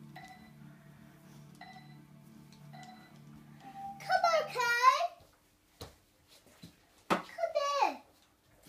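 Soft background music with a few short chiming notes, then a child's loud wordless voice with a sliding pitch, about four seconds in and again near the end.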